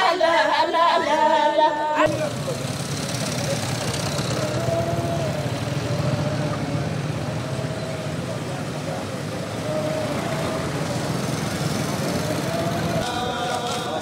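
Women singing an a cappella funeral chant, cut off abruptly about two seconds in by the steady street din of motorbike engines and crowd voices. About a second before the end, a marching crowd starts chanting.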